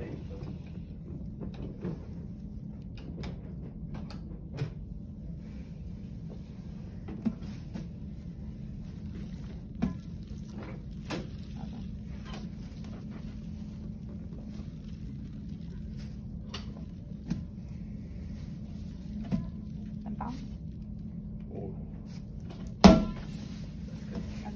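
Inflatable exercise ball being handled and tapped, giving short knocks every few seconds at irregular intervals, with the loudest thump about a second before the end. A steady room hum runs underneath.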